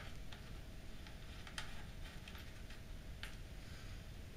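A few faint, scattered clicks of a small screwdriver turning a screw into a mini PC's sheet-metal RFI shield, over low room noise.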